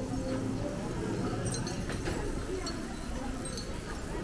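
Short, high chirps, which the walker hears as coming from the overhead power lines, scattered a few times over a steady street background with voices.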